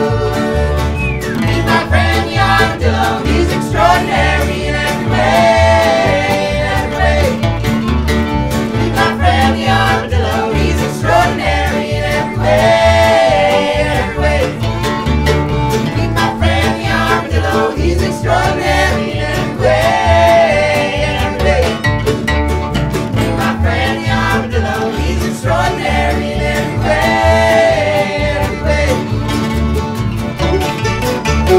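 Acoustic string band playing an up-tempo country/bluegrass song, with mandolin, acoustic guitars, upright bass, fiddle and accordion. A plucked bass keeps a steady beat under recurring melodic phrases.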